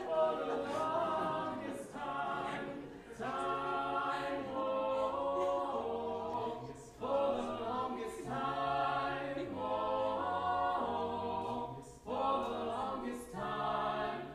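A quartet of two female and two male student voices singing a cappella, without accompaniment, in phrases of a few seconds broken by short pauses for breath.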